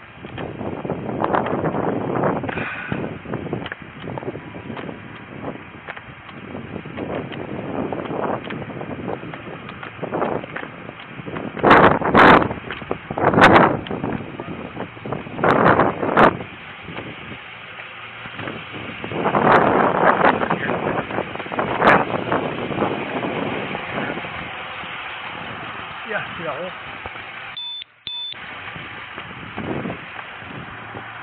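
Indistinct voices of people nearby over steady street noise, with several loud short noisy bursts in the middle. The sound cuts out briefly near the end.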